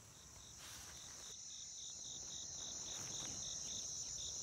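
Crickets chirping: a steady high drone with a pulsing trill about three times a second joining over a second in, fading in.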